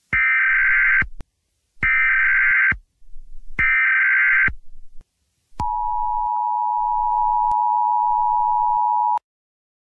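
Emergency Alert System tones: three bursts of the SAME digital data header, each about a second long with short gaps, then the steady two-tone attention signal held for about three and a half seconds before cutting off suddenly.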